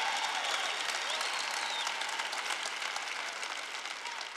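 Large audience applauding, with a few voices calling out over it; the applause dies away gradually.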